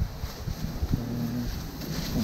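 Wind buffeting the microphone and handling noise from the camera, as low irregular rumbles and knocks, with a short low voiced hum about a second in.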